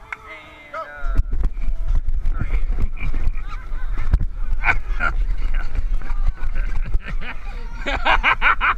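Climbing a steep inflatable vinyl wall by rope with a body-worn camera: a heavy rumble of handling noise and repeated knocks as the camera bumps and rubs against the inflatable, starting about a second in, with a few short high squeaks.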